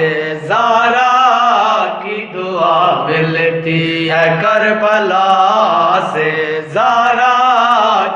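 Two men chanting a noha, an Urdu mourning lament, in long drawn-out melismatic phrases with brief breaths between them.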